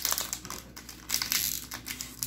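Foil trading-card booster pack wrapper crinkling in the hands as it is handled, a fast run of small crackles that peaks midway.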